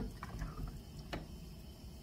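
Wooden spoon stirring a pot of veal stew with peas and pearl onions, a soft wet squishing with two light knocks of the spoon against the pot, one near the start and one about a second in.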